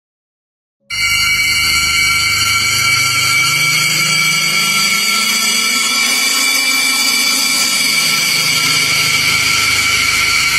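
A horror-style drone sound effect that cuts in abruptly after about a second of silence: a steady hissing wash with several high ringing tones held throughout, under a low tone that slowly rises and then sinks back.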